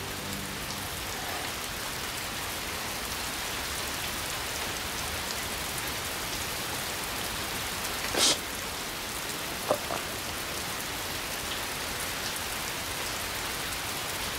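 Steady heavy rain in a film soundtrack, an even dense hiss, with a brief sharper sound about eight seconds in and a fainter one near ten seconds.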